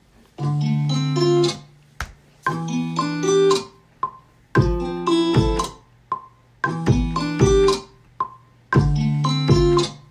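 A looped guitar sample playing back in short chopped phrases about two seconds apart. About halfway through, a programmed kick drum comes in, hitting twice under each phrase, with a short ringing tick in each gap.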